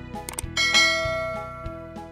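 Quick mouse-click sound effects, then a bright bell chime about half a second in that rings out and fades over a second and a half, over background music with a steady beat.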